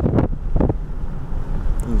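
Wind rumbling on the microphone, a steady low buffeting with a few stronger gusts near the start.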